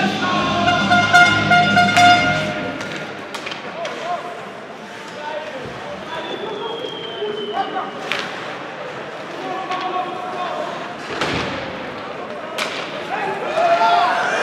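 Indoor ice hockey rink during play: singing voices from the stands fade out in the first few seconds, leaving crowd voices and sharp knocks of puck and sticks on the ice and boards, the loudest about eight, eleven and twelve and a half seconds in.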